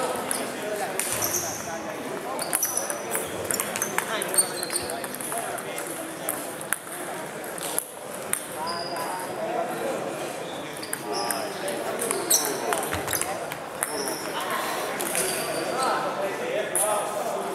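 Table tennis ball knocking sharply off the paddles and table, with short high squeaks of sports shoes on a wooden floor.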